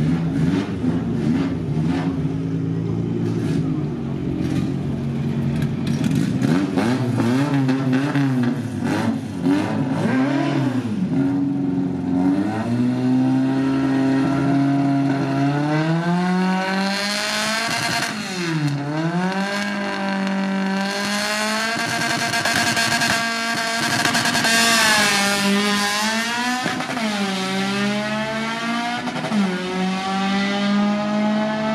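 Drag-racing car engines at the start line, idling and revving: the pitch is held steady for a few seconds, then drops and climbs sharply several times in the second half, with a rising rev near the end.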